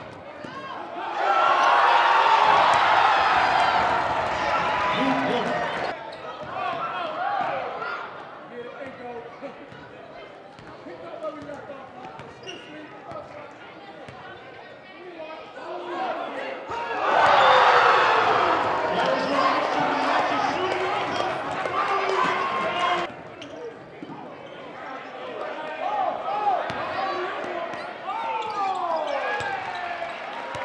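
Basketball game in a gym: a ball bouncing on the hardwood court amid players' voices, with the crowd cheering and shouting loudly twice, about a second in and again just past the middle, each burst cut off suddenly.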